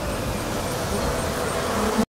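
Closing bars of a bass-heavy instrumental trap beat: deep bass, sustained mid notes and a faint high tick about four times a second. It cuts off suddenly at the end.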